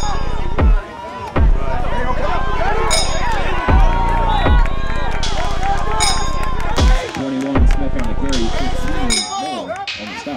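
Music with a heavy, sustained bass and sharp drum hits, with voices over it. The bass cuts out briefly a few times: about a second in, near the middle, and near the end.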